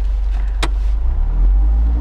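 Mazda MX-5 roadster's four-cylinder engine pulling away with the top down, getting louder about a second in as the car moves off. A single short click about half a second in.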